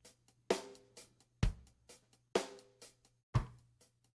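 Four-on-the-floor drum loop played back from a Roland SP-404 MkII sampler at half speed, pitched down an octave after being sampled at double speed: a kick about once a second with lighter hits in between. Pitched up and back down this way it sounds a little fuller, having lost some high end.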